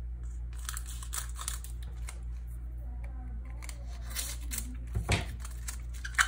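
A foil hockey card pack wrapper being handled and torn open, with scattered crinkling and tearing, and a soft bump about five seconds in.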